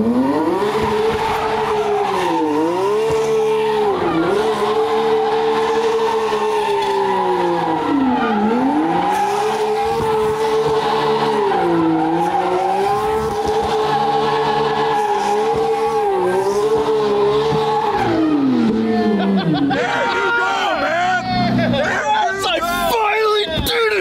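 Porsche 911 flat-six engine held at high revs while the car spins donuts, rear tyres squealing and smoking, the revs dipping briefly several times. Near the end the revs fall away and voices take over.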